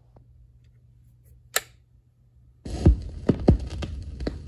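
Faint turntable hum with one sharp click about a second and a half in. Then, from about two and a half seconds in, the stylus rides the lead-in groove of a 45 rpm vinyl single, giving surface noise with irregular pops and crackles.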